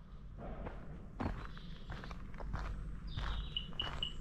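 Footsteps walking on an earth towpath at an ordinary walking pace, with a few short high chirps near the end.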